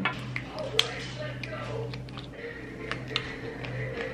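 A few light plastic clicks and taps as a Wallflowers fragrance refill bottle is handled and fitted into its plug-in warmer, over a steady low hum and faint voices in the background.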